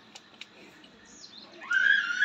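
A loud, high-pitched animal call, rising and falling in one arch, starts about a second and a half in, just after a short high falling whistle-like cry. Two faint clicks come before it.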